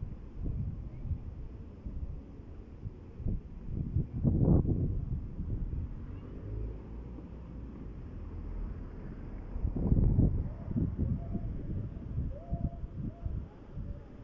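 Street ambience heard through wind rumbling on the microphone, with car traffic going by; two louder swells come about four and ten seconds in.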